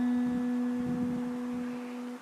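Acoustic guitar: one held note ringing out and slowly fading, with no new note plucked until just after the end.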